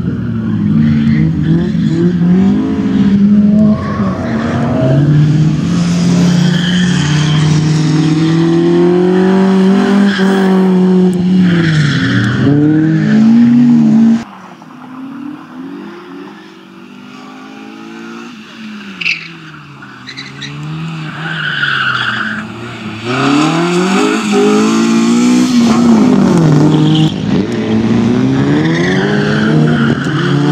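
Honda CRX's 1.6-litre D16Z5 four-cylinder engine revving hard, its pitch climbing and falling again and again through gear changes, with tyres squealing in the turns. About halfway through the sound drops suddenly to a much quieter level, then builds back to full loudness over the last several seconds.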